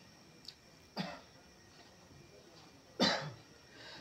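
A man coughing lightly twice, a faint cough about a second in and a louder one about three seconds in.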